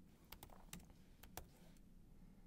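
Faint, irregular keystrokes on a laptop keyboard: a handful of separate key clicks, unevenly spaced, as someone types.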